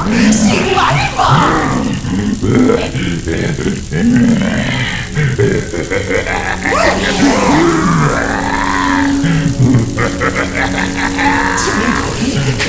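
Dramatic background music, with a man's voice over it near the start.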